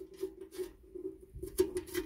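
A few light clicks and taps from a hand handling the scissor sharpener's sheet-metal housing, over a faint steady hum.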